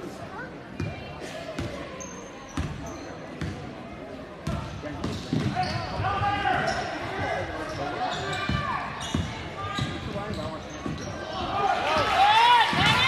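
A basketball being dribbled on a hardwood gym floor, with irregular sharp bounces, under the voices of players and spectators. The action gets louder and busier about halfway through.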